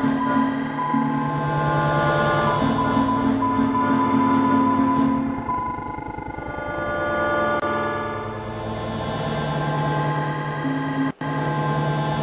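Granular synthesis output of the netMUSE software: a dense, sustained cloud of layered steady tones, with pitches entering and falling away as the texture shifts. It cuts out for an instant near the end.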